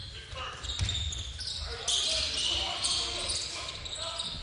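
Basketball being dribbled on a hardwood gym court, with sneakers squeaking during play and faint voices in a large, echoing hall. The squeaks grow louder about halfway through.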